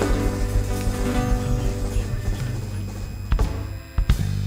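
Live Uruguayan folk band playing an instrumental passage: held accordion notes over hand drums. The music thins out after about three seconds, with two sharp knocks near the end.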